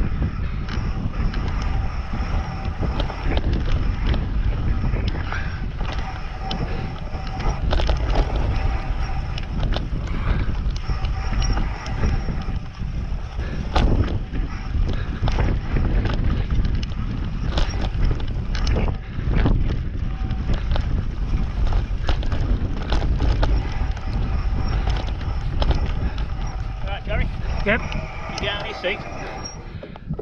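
Mountain bike ridden over rough singletrack: wind buffets the microphone over a steady tyre rumble, with frequent knocks and rattles from the bike as it hits bumps.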